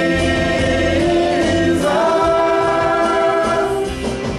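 Gospel worship music: a choir singing long held notes over instrumental accompaniment with a bass line, the chord changing about two seconds in.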